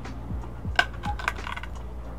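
Loose wooden pallet boards knocking and clattering against each other as they are handled: a few light, uneven knocks, the sharpest a little under a second in.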